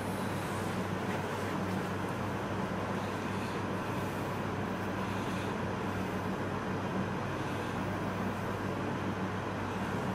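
Steady background noise: an even hiss with a low hum underneath, unchanging throughout, with no distinct strokes or knocks.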